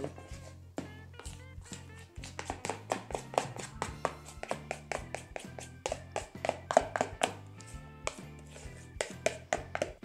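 Background music with a quick, steady beat over a low bass line.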